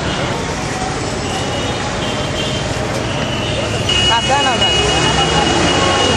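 Busy street ambience: steady traffic noise and voices of people nearby, with a high steady tone sounding through the second half.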